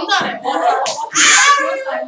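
Voices talking in an online class, a child's among them, with a loud, short hissing burst about a second in.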